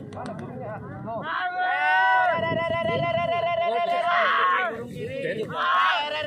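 Several men shouting long, drawn-out calls over crowd chatter: the cries that handlers at a sprint pigeon race use to call their racing pigeons down to land. One long call is held for a couple of seconds in the middle, and another starts near the end.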